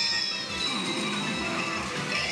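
Pachinko machine (Kuru Kuru Pachinko Darumash) playing its electronic music and effect tones over a steady low beat during a lottery animation, with a tone sliding down in pitch just after the start.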